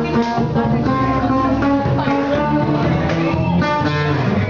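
Live band music: plucked guitar notes in a quick-moving melody over an electric bass line.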